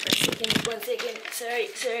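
A voice speaking softly, with paper rustling and a few light clicks at the start from a spiral-bound wall calendar being handled.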